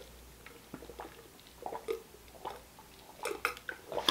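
A man drinking from a plastic cup, with a few faint, separate gulps and swallows spread through.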